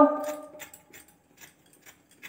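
A potato being cut on a boti, the upright curved kitchen blade: a string of short, crisp slicing clicks, about two a second, after a voice trails off at the start.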